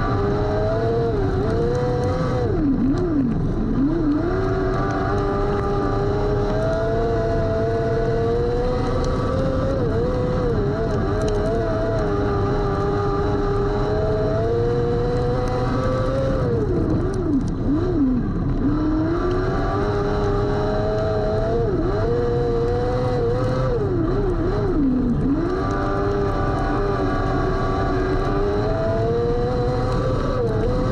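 On-board sound of a non-wing dirt sprint car's engine at racing speed, its pitch held steady down the straights and dipping sharply as the throttle is lifted for the corners, about every six to seven seconds.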